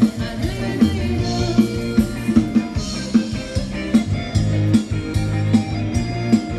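Thai ramwong dance music played by a live band, drum kit keeping a steady beat over bass and guitar.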